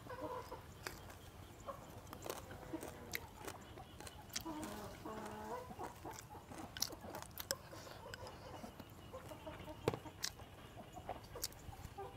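Chickens clucking faintly, the clearest call about five seconds in, among scattered light clicks of chopsticks on a rice bowl and chewing.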